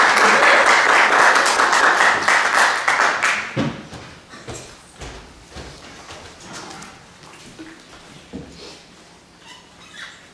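An audience applauding, the clapping dying away after about three and a half seconds, followed by a few scattered knocks and shuffling.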